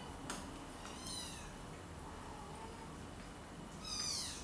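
Siamese kitten mewing: two high, falling mews, one about a second in and another near the end, with a light click shortly after the start.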